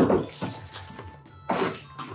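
Cardboard box and plastic packaging being handled: a loud rustle and scrape right at the start and another about a second and a half in, with faint background music underneath.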